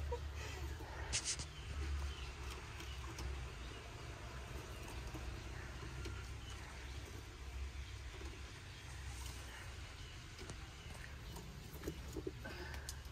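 Faint clicks of hen's eggs being set one by one into a wicker egg basket, over a low steady rumble.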